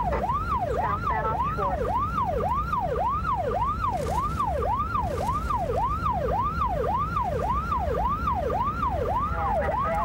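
Police car siren on yelp: a fast, repeating rising-and-falling wail, about two to three cycles a second. It is heard from inside the pursuing patrol car, over the engine and road rumble.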